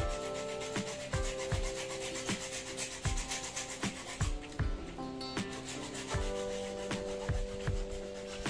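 A bare hacksaw blade worked by hand through a white plastic water pipe, quick back-and-forth sawing strokes, with background music and a steady beat underneath.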